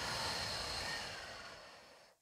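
A woman's long, slow exhale through pursed lips: a steady breathy hiss that fades away over about two seconds.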